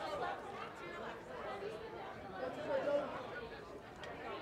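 Indistinct chatter of several people talking at once, no single voice standing out.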